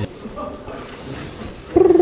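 Quiet shop background, then near the end a man's sudden loud vocal outburst held on one pitch for about half a second, a silly animal-like noise.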